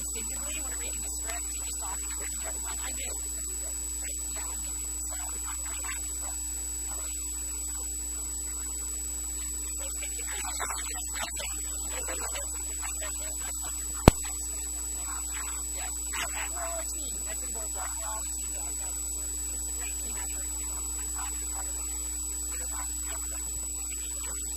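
Steady electrical mains hum with a thin high whine above it, and faint voices in the background now and then. A single sharp click comes about halfway through.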